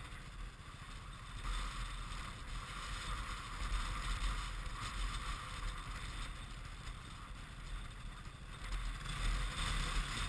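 Wind buffeting the microphone of an action camera, a rushing hiss over low rumbling gusts that picks up about a second and a half in and again near the end.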